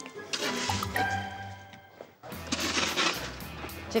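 A plastic snow shovel scraping and pushing snow along a concrete walkway, in two stretches, the second starting suddenly a little over two seconds in, with soft background music under it.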